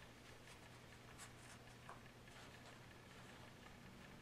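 Near silence: faint rustling of cotton and denim fabric being handled and smoothed, with a few soft ticks, over a low steady room hum.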